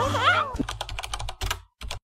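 A brief high voice, then a quick run of light clicks, about ten a second, broken off by a moment of silence just before the end.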